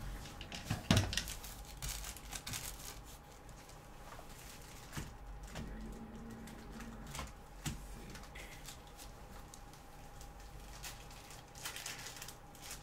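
Handling noise on a tabletop: scattered light clicks and rustling, with one sharp knock about a second in, over a faint steady room hum.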